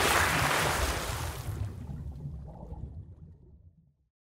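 Applause fading out, its hiss thinning over the first two seconds, with a low rumble underneath that dies away to silence near the end.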